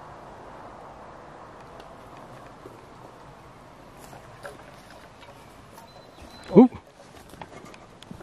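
Low, steady outdoor background with a few faint ticks. About six seconds in, a handheld meter gives a short, high, steady beep, cut off by a man's sharp 'oop'.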